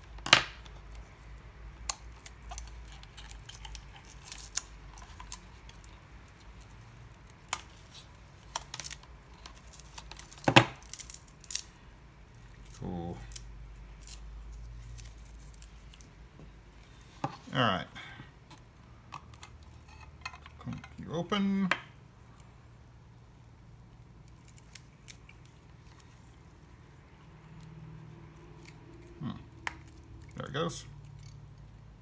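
Gloved hands handling and opening a small black plastic enclosure: scattered plastic clicks and knocks, with sharp clicks about half a second in and about ten seconds in, and two longer scraping sounds in the second half.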